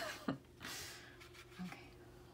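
Faint sounds of a watercolour brush being worked in paint on a ceramic palette: a click at the start, a short swish about half a second in, then a few light taps, over a faint steady hum.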